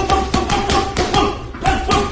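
Boxing gloves striking a heavy bag in a fast flurry of punches, about four to five a second, with music playing behind.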